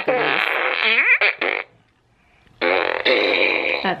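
Electronic toy fart gun playing recorded fart noises twice. The first runs on and cuts off about a second and a half in; after a short pause a second one plays until just before the end.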